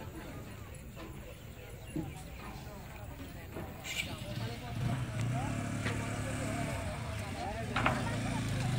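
People talking around the ferry landing, with a sharp knock near the middle; from about five seconds in a steady low engine hum starts and keeps running, an engine idling.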